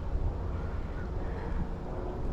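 Low, steady rumble of wind buffeting the microphone outdoors on open water.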